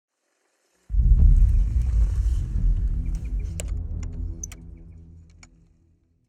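Intro logo sound effect: a deep rumble that hits suddenly about a second in and dies away over the next five seconds, with a few short sharp ticks near the middle.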